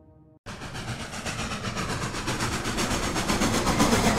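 Train sound effect: rail clatter with a fast, even rhythm that starts suddenly about half a second in and grows steadily louder.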